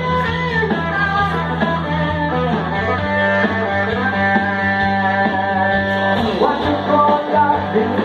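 Live rock-blues music: an electric guitar playing over a steady low bass part, with a man singing into a microphone through PA speakers.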